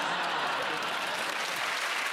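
Studio audience applauding and laughing: a steady, dense clatter of clapping with no break.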